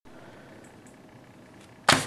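Faint steady hiss, then a single sharp, loud hit near the end that dies away within a fraction of a second.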